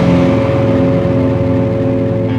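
Rock music: a held, distorted electric guitar chord rings out while a cymbal crash fades away, the drums having stopped.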